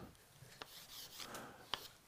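Chalk writing on a blackboard: faint, uneven scratching strokes with a couple of light clicks of the chalk.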